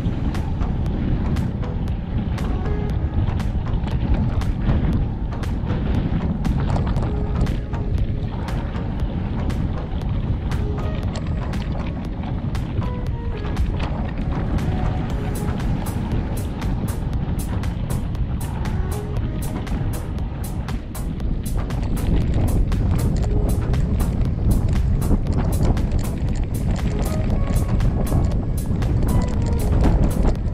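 Mountain bike riding along a gravel dirt track: steady wind noise on the camera microphone and the bike rattling over stones in many sharp clicks, growing a little louder about two-thirds of the way through. Background music plays underneath.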